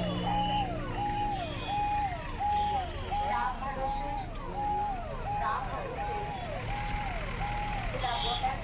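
Electronic vehicle siren sounding a repeating wail, a held high note that drops and climbs back about every three-quarters of a second, over the chatter of a crowd.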